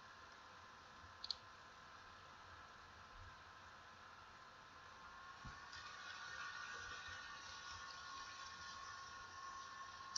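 Near silence: faint room tone with a steady electrical hum, and a single short click about a second in.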